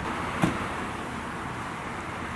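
Steady outdoor background noise with one short knock about half a second in.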